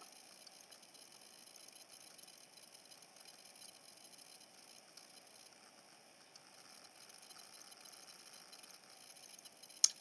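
Faint steady hiss of room tone with soft, indistinct small handling noises and a single light click near the end.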